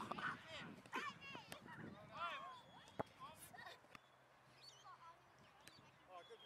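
Faint, distant children's voices calling and shouting across an open playing field, with one sharp knock about halfway through.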